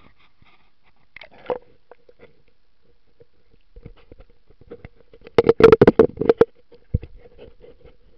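Handling noise of a camera being set down under water: scattered clicks and scrapes, then a quick run of loud knocks between about five and six and a half seconds in, and one more knock shortly after.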